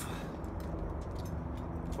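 Steady low rumble and hiss of outdoor background noise with a faint steady hum underneath.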